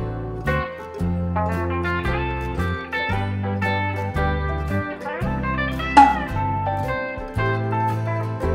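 Background music: a guitar tune over a bass line, with one sharp, louder accent about six seconds in.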